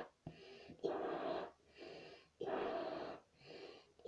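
A child blowing up a rubber balloon: a quick breath in, then a longer puff of air into the balloon, twice over.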